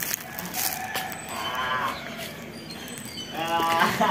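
A faint animal call, one short wavering cry about a second and a half in, over light rustling and handling noise; PANN takes it for a farm animal such as a cow.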